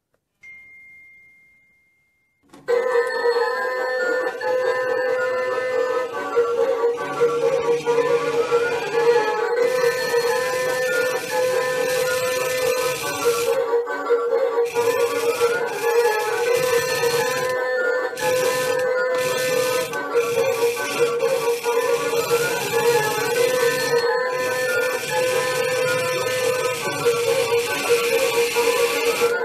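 Toy Candy Grabber claw machine: a single short beep, then its tinny electronic tune plays continuously over a steady hum as the claw is worked.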